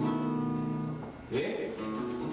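Acoustic guitar playing chords live, the chords ringing on.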